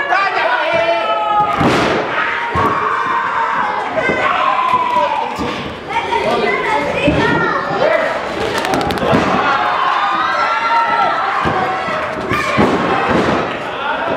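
A wrestler slammed down onto the wrestling ring, a heavy thud about two seconds in, followed by a few lighter bumps on the ring later on. Shouting voices run throughout.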